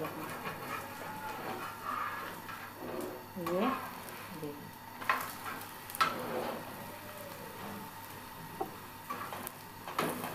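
Malpura batter sizzling as it fries on a hot iron tawa, its edges browning. A metal spatula clicks sharply against the griddle twice, about five and six seconds in.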